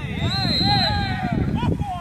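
Men shouting on a football pitch during play, over a steady low rumble.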